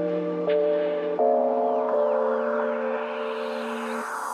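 Background music of slow, held chords that change a few times in the first two seconds and then hold steady.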